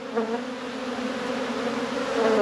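Honeybees buzzing in a steady hum from an opened hive crowded with bees.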